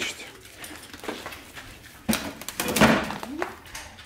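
Rustling and clattering of packaging and plastic bar clamps being handled, louder from about halfway through, with a short pitched sound that may be a voice a little after three seconds.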